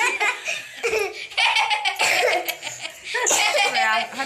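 An elderly woman and a younger woman laughing together, with a few words mixed in.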